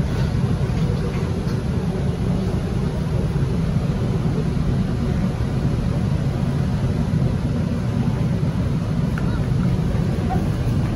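Steady low hum inside a Bombardier Movia C951 metro car standing at a platform with its doors open: the train's onboard equipment and ventilation running while it waits.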